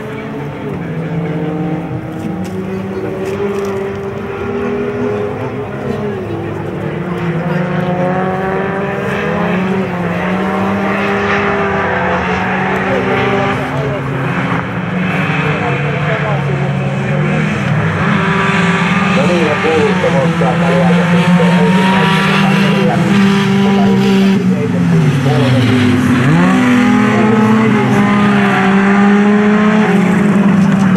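Several folkrace cars racing together, their engines revving up and down in pitch through gear changes and corners. They grow louder toward the end.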